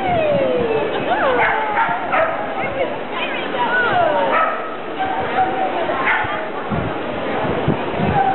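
A dog barking and yipping repeatedly, several high calls falling in pitch, mostly in the first half, over voices and hall noise.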